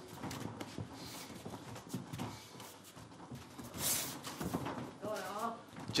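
Ringside sound of a kickboxing bout: irregular thuds and knocks of punches, kicks and footwork on the ring canvas, a short sharp hiss about four seconds in, and a voice calling out briefly near the end.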